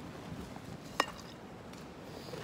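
A single short, sharp clink about a second in, with a brief ring, over a faint steady background hush.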